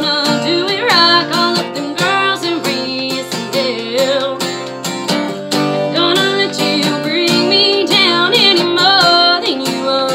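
A woman singing a country song while strumming an acoustic guitar fitted with a capo, performed live with a steady strummed rhythm under the sung melody.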